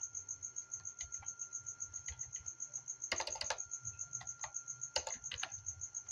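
Typing on a computer keyboard: scattered keystrokes, with a quick run of several about three seconds in and another about five seconds in. Under it runs a steady, high-pitched chirping pulse, about eight pulses a second.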